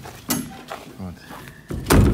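A hinged polycarbonate greenhouse panel swung shut, with a light knock early on and one loud thud just before the end.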